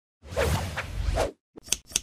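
Intro logo sound effect: a whoosh lasting about a second over a low rumble, then, after a short gap, a few quick sharp clicks near the end, the last two the sharpest.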